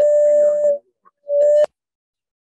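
Two electronic beeps on a telephone line: a long steady tone, then a shorter one just over a second in, with the caller's voice faintly under the first.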